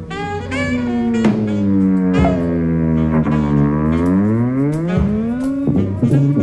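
Live jazz quintet playing: alto saxophone over tuba, cello, guitar and drums, with low lines sliding down and back up in pitch and sharp drum and cymbal strokes throughout.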